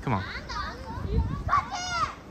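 Young children chattering and calling out in high voices, busiest and loudest near the end.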